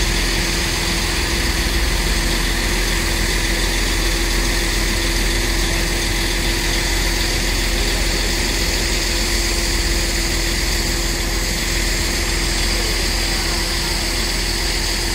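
A heavy diesel engine running steadily with a constant hum, while a broken-down coach is drawn up the ramp onto a recovery low-loader.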